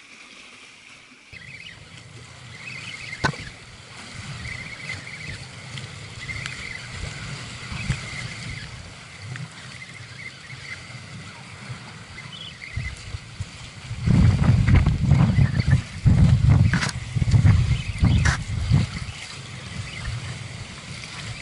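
Wind buffeting the camera microphone over a choppy sea, a low gusty rumble that turns into strong, loud gusts about fourteen seconds in.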